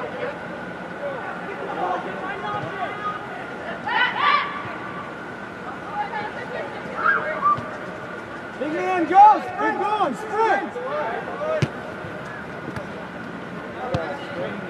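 Shouts and calls from soccer players and the sideline over a background of voice babble, loudest as several overlapping calls about nine to ten seconds in, with a single sharp knock a little later.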